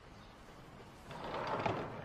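A sliding shop door rolling open: a rattling rush that starts about a second in and swells toward the end.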